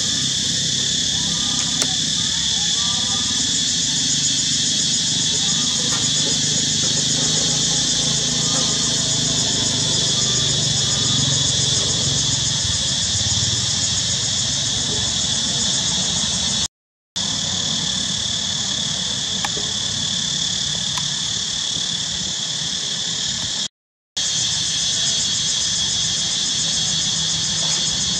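A steady, high chirring of insects, with a low background rumble under it. The sound cuts out to silence twice, briefly, about two-thirds of the way through and again near the end.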